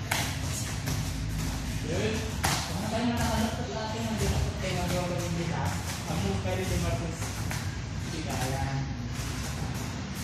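Bare hands and feet thudding on foam floor mats again and again during a crawling and jumping drill, with a voice or singing running over it.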